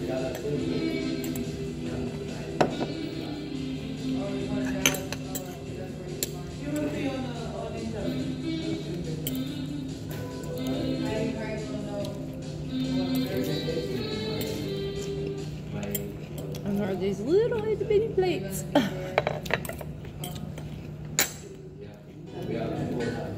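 Background music playing steadily, with a metal fork clinking against a plate now and then: a couple of sharp clinks early on and a quick run of clinks near the end, which are the loudest sounds.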